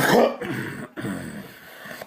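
A man coughing and clearing his throat into his fist: one loud harsh burst at the start, then quieter rasping throat noises.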